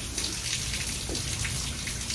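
Rain falling steadily, an even hiss with no break.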